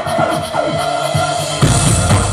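Live rock band playing through a PA, keyboard and drum kit on stage; about one and a half seconds in, the full band comes in louder with heavy drums and bass.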